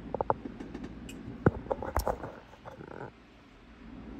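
Laptop trackpad clicks and phone handling noise: a quick run of sharp clicks and knocks, the loudest between one and a half and two seconds in, over a low steady hum that drops away about three seconds in.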